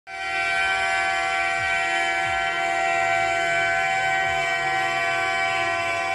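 A truck horn held down in one long, unbroken blast at a steady pitch.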